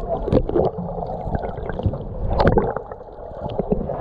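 Muffled water sloshing and gurgling around a camera held just below the sea surface, with scattered small clicks and knocks.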